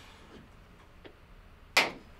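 A party popper going off: one sharp, loud pop near the end, fading within a moment.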